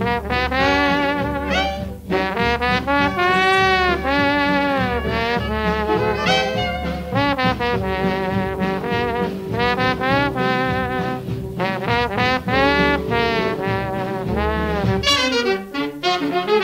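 Jazz trombone solo with a swing band behind it, the horn sliding and bending between notes over a steady rhythm-section beat.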